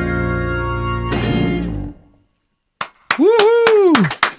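Acoustic band of acoustic guitars, bass and keyboard playing the final chord of a pop song, with one last strum; it rings and stops about two seconds in. After a short silence there are a few sharp clicks, then a voice calls out briefly near the end.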